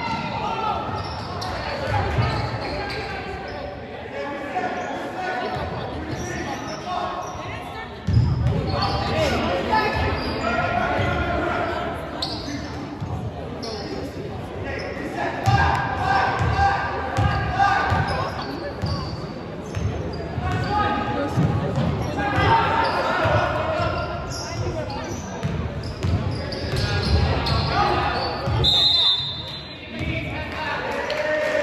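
A basketball bouncing on a hardwood gym floor during play, the thumps echoing in a large hall over the voices of players and spectators. A short high whistle sounds near the end.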